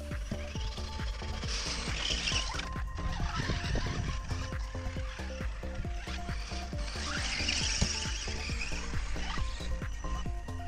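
Background music with a steady low beat and held notes, swelling twice with a rising hiss.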